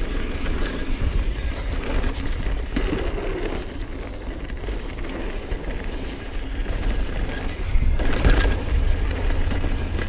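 Mountain bike descending a dirt trail at speed: the tyres roll over the dirt and the bike rattles over bumps, while wind buffets the camera microphone with a steady low rumble. A louder rush of wind and tyre noise comes about eight seconds in.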